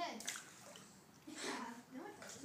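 Water sloshing and splashing in a swimming pool, with children's voices over it at the start and again about a second and a half in.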